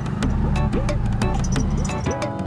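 Background music with a quick, steady drum beat of about four strokes a second, repeated rising pitch-bending drum strokes and a steady bass line.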